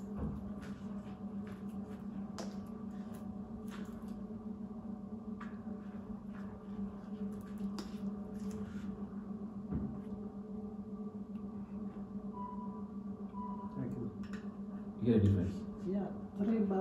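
A steady low hum, with scattered faint clicks and taps from spoons, bottles and jars being handled.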